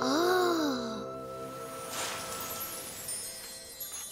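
A young cartoon voice giving a soft 'ooh' of wonder in the first second, its pitch rising then falling. Under it, gentle tinkling chime music with held tones fades slowly, the cartoon's sound for icicles.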